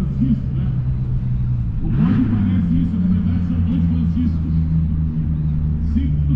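A man's amplified voice over a public-address loudspeaker with no clear words, over a steady low hum.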